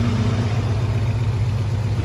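1967 Chevrolet C10 pickup's engine idling steadily with an even low note.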